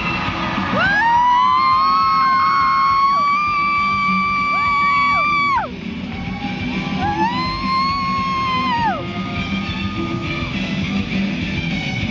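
Rock singer belting a long, high held note over live band backing. The note swoops up, holds for about five seconds and slides down. A second, shorter high note follows about a second later.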